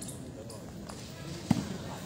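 A single sharp smack of a volleyball struck by a player's hand about one and a half seconds in, over low background chatter from the spectators.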